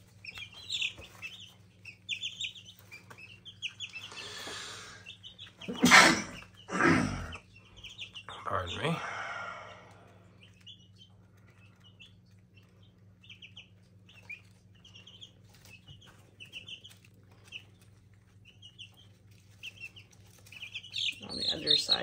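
Young chicks peeping, with short high chirps scattered throughout. About four to ten seconds in come loud rustles and a couple of sharp bumps from handling in the plastic brooder tub.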